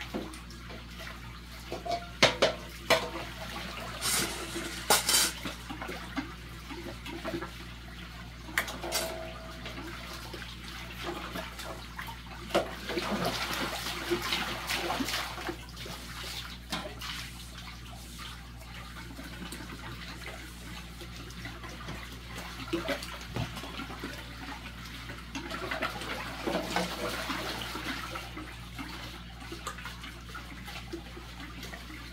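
Stainless steel bowls being washed by hand in a large steel basin of water: water sloshing, with several sharp metal clinks in the first few seconds and water pouring from a bowl back into the basin about halfway through.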